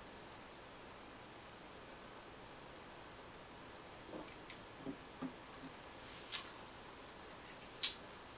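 Quiet room tone, then a few faint short sounds and two sharp clicks in the last two seconds as a beer glass is set down on a wooden table.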